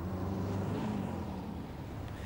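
Low, steady hum of a distant engine, its pitch shifting slightly about a second in, over a faint urban background.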